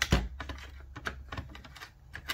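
Quick light clicks and knocks of plastic from a toy cash register's open drawer as play coins and paper money are handled, the loudest knock just at the start.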